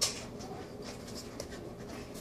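Pug snuffling and nosing in shaggy carpet: a sharp scratchy rustle at the very start, then a few fainter short scratchy rustles.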